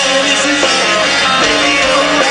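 Live rock band playing loudly and continuously: electric guitars and drums through the stage amplification.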